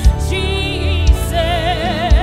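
Gospel worship song: a sung voice with wavering vibrato over a steady band accompaniment with a low beat.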